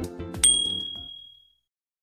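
Outro music winding down, with a single bright notification-bell ding about half a second in as the subscribe bell is clicked; the ding rings on for about a second.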